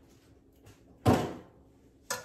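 A door shutting with one loud thud about a second in, ringing out briefly.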